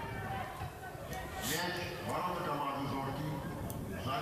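Faint voices calling out across a football pitch, with a few short, sharp knocks.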